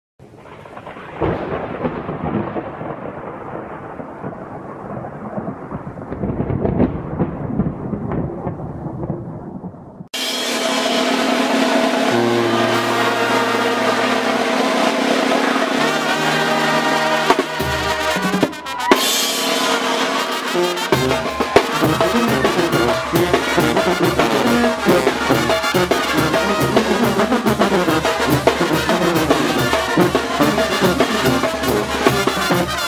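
A low rumble like thunder for about the first ten seconds. It cuts suddenly to a Mexican brass band playing loudly: trumpets and trombones over snare, cymbals and bass drum, with a steady drum beat from about twenty seconds in.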